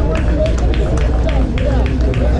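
Several people's voices talking and calling out over one another, over a steady low rumble. A regular series of sharp taps runs through it at about three a second.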